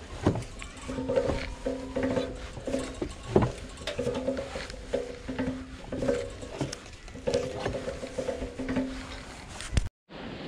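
Hand-cranked cable-stripping machine being turned as a cable is drawn through it, giving short pitched creaks and clicks in an uneven rhythm. The crank is stiff to turn because the cutting blade is set deep. The sound cuts off suddenly near the end.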